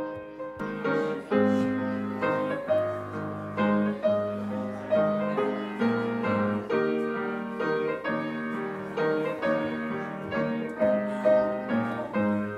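Piano playing a hymn tune in steady chords, each struck note ringing and fading.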